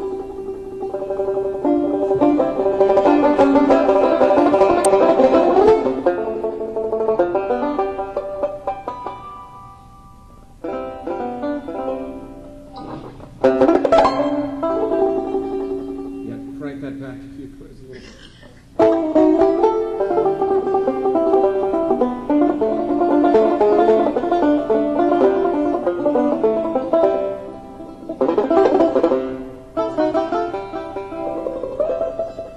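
Solo four-string banjo playing a classical piece: rapid runs of picked notes, a softer, sparser passage in the middle with one held low note, then the full loud playing returning suddenly about two-thirds of the way through.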